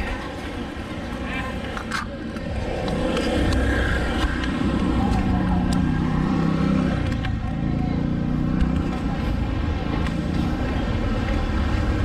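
A small motor scooter's engine running as it rides past close by, growing louder about three seconds in and staying strong through the middle before easing off near the end.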